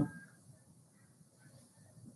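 Near silence: room tone, with the tail of a spoken word at the very start.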